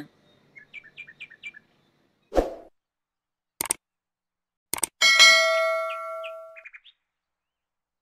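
Subscribe-button animation sound effects: a few faint chirps, a soft thump, two sharp mouse clicks, then a bright bell-like ding that rings out for about a second and a half.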